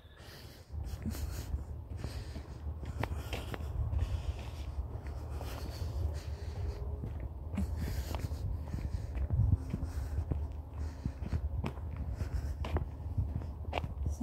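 Footsteps through grass and along a dirt path, with a steady low rumble and scattered irregular knocks.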